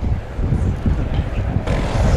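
Wind buffeting the microphone, with a light aircraft's engine and propeller growing louder near the end as the Helio Courier comes in low on a slow landing approach.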